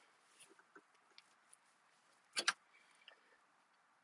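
Two quick metallic clicks close together about two and a half seconds in, otherwise near silence: a hairpin cotter pin being worked out of a mower deck's lift-cable linkage.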